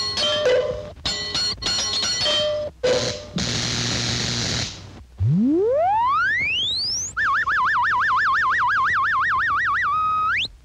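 Cartoon electrocution sound effects. A jumble of short jangling hits gives way to a steady electric buzz. Then a whistle-like tone slides smoothly from very low to very high, and a high tone warbles rapidly, about five wobbles a second.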